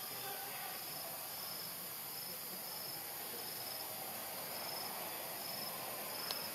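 Outdoor insect chorus with a steady high hiss and a short high chirp repeating evenly, roughly every two-thirds of a second.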